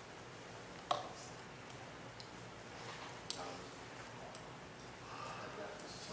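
Quiet room with faint murmuring voices and two sharp clicks, the louder one about a second in and another a little past three seconds.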